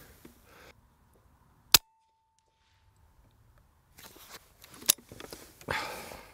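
A single sharp shot from a Daystate Red Wolf PCP air rifle firing a Howler slug, about two seconds in, followed by a faint steady ring lasting about a second. Later come soft rustling and a click.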